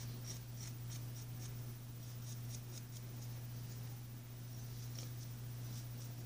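Sharpie permanent marker rubbing over the steel bevel of a plane iron in short quick strokes, about three a second with a brief pause early on. It is inking the edge so the sharpening stone's contact will show. A steady low hum runs underneath.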